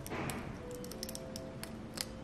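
Soft background music, faint, with small crackles and ticks of adhesive vinyl being peeled away from its backing sheet as a cut design is weeded.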